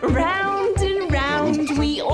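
High-pitched cartoon children's voices laughing over a bouncy nursery-rhyme backing track with a steady drum beat.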